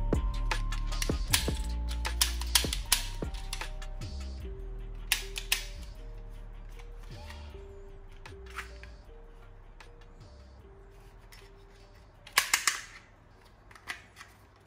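Background music with steady melodic notes, fading away. Sharp plastic clicks sound through it, with a loud burst of clicks and clatter near the end, from a toy pistol being handled.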